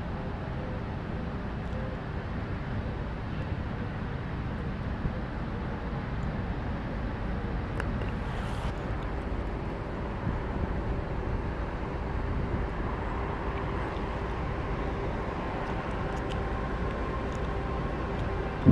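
Steady outdoor background ambience: a continuous low rumble with a faint steady hum and a few faint clicks.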